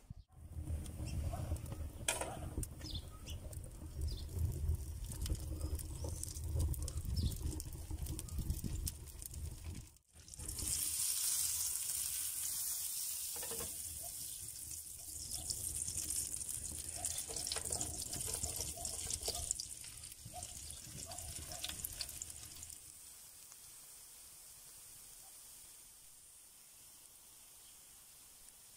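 Butter and then sliced onions sizzling in a frying pan over a wood fire, a steady hiss that starts abruptly about ten seconds in and gradually fades toward the end. Before it, a low rumble with a few knocks.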